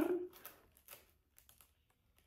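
A few faint, short clicks and light rustles from fingers handling a small gift with a paper tag, heard about one to one and a half seconds in.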